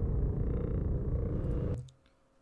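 Trailer soundtrack: a deep, steady low rumbling drone that cuts off suddenly near the end when playback is paused.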